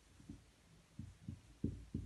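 A series of soft, low thumps, roughly two a second and often in close pairs, a little stronger toward the end.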